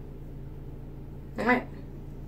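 A single short vocal sound about one and a half seconds in, over a steady low hum.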